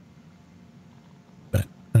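A pause in conversation with a faint steady background hum, broken about one and a half seconds in by a single short vocal sound from a person. A word of speech starts right after it.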